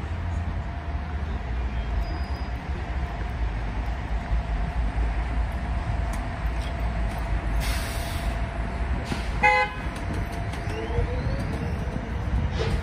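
City street traffic: a steady low rumble with a held hum, a brief hiss, then a short vehicle horn toot about nine and a half seconds in, followed by a rising whine near the end.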